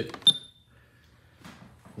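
A single short, high-pitched electronic beep from a Sony car stereo head unit as one of its buttons is pressed, followed by a few faint ticks.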